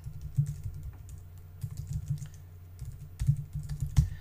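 Typing on a computer keyboard: a run of irregular key clicks as a username and password are entered.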